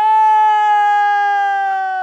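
A man's long drawn-out shouted call, one held note that sinks slightly in pitch over about two seconds. It is the closing cry of a street announcement to villagers.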